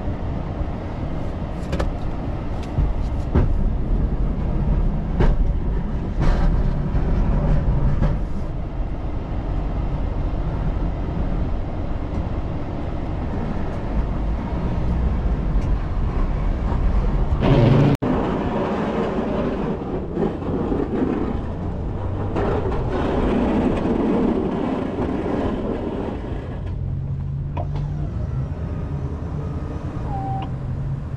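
Chevy 3500HD pickup running steadily as it pushes snow with a Boss DXT V-plow: a continuous low engine and tyre rumble, with a few sharp clicks and knocks in the first eight seconds. The sound drops out briefly about eighteen seconds in.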